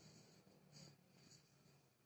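Near silence: room tone with a few faint, soft hisses.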